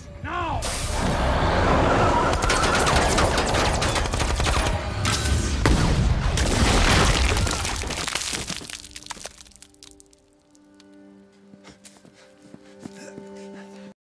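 Dramatic film sound mix of rapid, sustained gunfire with crackling impacts over orchestral score for about eight seconds. It then dies away to a quiet, held music drone with a few faint clicks.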